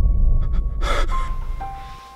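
Edited-in meme sound effect: a loud, heavily bass-boosted sound fading away, with a short gasp-like burst about a second in, followed by a few held musical notes.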